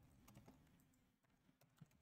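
Near silence with a few faint computer keyboard clicks.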